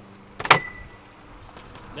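A BMX bike strikes the metal edge of a wooden grind box once, about half a second in. It makes one sharp clank with a brief metallic ring.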